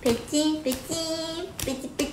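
A woman's high voice singing in a sing-song way, holding short notes of about half a second and stepping up and down between them.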